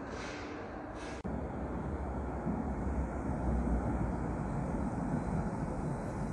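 DVG Stadtbahn tram running into an underground station: a low rumble of wheels on rail that grows louder as it nears the platform. A hiss in the first second cuts off abruptly just over a second in.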